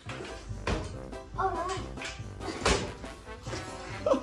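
Background music with a steady beat, cut by two sharp knocks, one under a second in and a louder one near the three-second mark.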